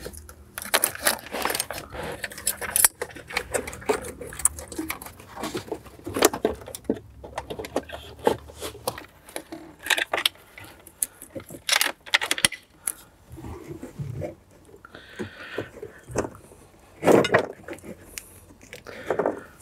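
Aftermarket amplifier wiring harness being pulled up behind a car dashboard: irregular rustling of cables and clicking and clattering of plastic connectors against the dash panels, with a sharper click near the end.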